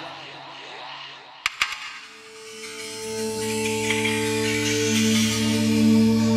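Instrumental break in a hip-hop track: the beat and vocals drop out, a few sharp percussive clicks come about a second and a half in, then low cello notes come in and hold, growing steadily louder toward the end.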